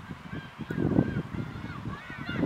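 Birds calling outdoors: a few short, faint curving calls in the first second or so, over a low rumble.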